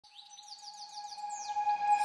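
Opening of a background music track fading in: a held tone with a rapid series of short, falling bird-like chirps over it.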